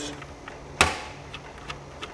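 One sharp click about a second in, followed by two faint ticks: handling noise from a screwdriver and the laptop's plastic case as it is taken apart.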